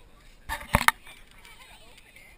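A quick cluster of sharp knocks and rubbing, camera-handling noise, about half a second in, followed by faint wavering voices of people on the beach.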